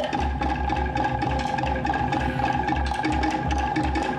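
Live Polynesian drum music: rapid, sharp wooden strikes over a pulsing low drum beat, with a steady held tone underneath.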